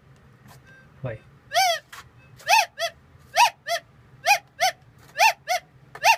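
Minelab XT 18000 metal detector giving short rising-and-falling beeps, two close together about once a second, as the coil is swept back and forth over a dug hole. This is the signal of metal under the coil.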